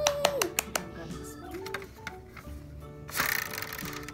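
Plastic Game of Life spinner wheel ticking as it is spun: a run of sharp clicks in the first second, coming further apart, then a short rattle about three seconds in. Faint background music runs under it.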